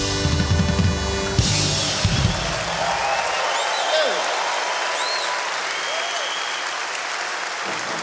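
A rock band with a drum kit ends a song: the held chord cuts off about one and a half seconds in and the last drum hits stop a moment later. A large concert audience then applauds and cheers.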